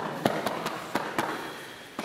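A few light taps and clicks with a rustle, from bodies and clothing shifting against foam floor mats during a leg lock, over a noisy large-hall background that fades toward the end.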